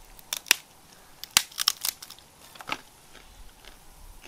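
Hard dry ration crackers being broken and crunched: a string of sharp cracks, about half a dozen, in the first three seconds.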